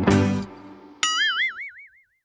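A short plucked-string music jingle ends in the first half second. About a second in, a cartoon boing sound effect sounds: a tone that wobbles up and down about five times a second and fades out.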